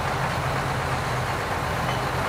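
Steady low engine hum, like a heavy vehicle idling, over an even wash of background noise.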